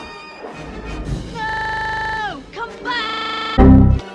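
Film score music with brass: a held high note that slides down in pitch, then a second held note, then a sudden very loud low boom near the end. The held notes keep an unnaturally even loudness, as if looped or stretched in the edit.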